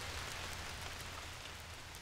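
Rain falling on puddled, bare muddy ground: a steady even patter of drops on water and wet soil, easing slightly toward the end.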